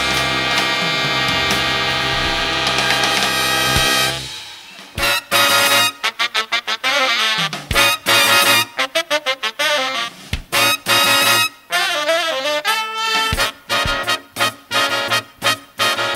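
Jazz big band of trumpets, trombones and saxophones holding a loud sustained chord for about four seconds, then, after a brief drop, playing short punchy staccato hits and figures.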